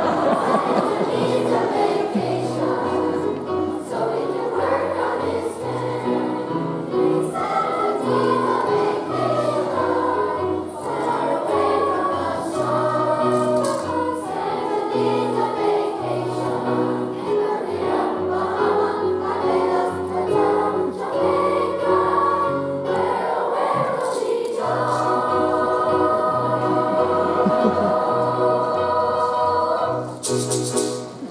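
School choir of young voices singing a Christmas song with piano accompaniment, the bass stepping note by note under the voices. Near the end the choir holds one long final chord.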